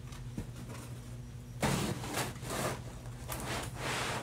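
Rugs being dragged and shifted against each other and the floor: several rustling, scraping swishes from about halfway through, over a steady low hum.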